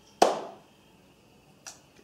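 A single sharp hit with a short fading tail, then near silence apart from a faint click near the end.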